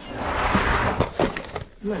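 Hands rummaging through a cardboard box of toys: a rustling for about the first second, then a few sharp knocks as the toys are shifted about.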